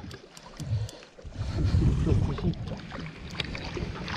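Water sloshing and slapping against the hull of a bass boat, with a few light knocks.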